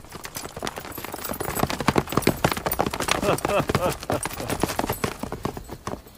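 Many rapid, overlapping footfalls on hard ground, a troop arriving at speed.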